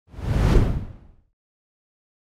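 A whoosh sound effect for an animated title transition: a single rushing sweep that falls in pitch and fades out within about a second.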